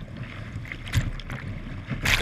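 Whitewater rushing and splashing over a kayak's bow, close on a bow-mounted camera, with a sharper splash about a second in.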